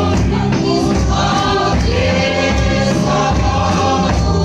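A congregation sings a gospel hymn together, led by a woman on a microphone, over a steady drumbeat from large hand-beaten drums.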